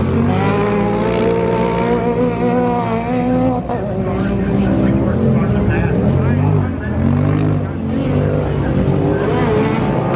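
Several side-by-side UTV racing engines revving as the cars race over the jumps, their pitch climbing and falling with the throttle, with a dip and swell about seven seconds in.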